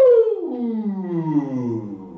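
A singer's sustained 'ooh' vocal siren gliding smoothly down in pitch from the top of the range to the bottom, fading as it reaches the low end. It is a range-stretching warm-up exercise.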